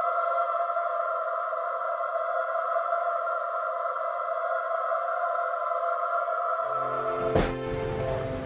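Background film-score music: a sustained electronic drone of two steady high tones. Deeper notes join about two-thirds of the way through, and a sharp hit comes shortly after.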